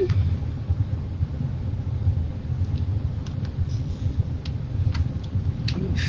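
A steady low rumble, with a few faint clicks in the second half as deco mesh is handled and pushed into a wreath form.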